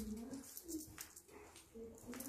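A pigeon cooing: soft, low coos, several in a row, each gently rising and falling in pitch.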